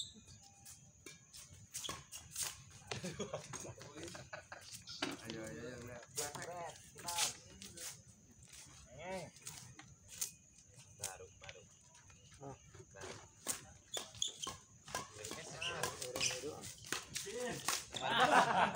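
Badminton rally: sharp racket strikes on a shuttlecock at irregular intervals, with players' voices calling out in between.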